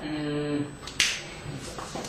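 A short held hum of a voice, then a single sharp click about a second in, with a couple of faint ticks near the end, in a small room.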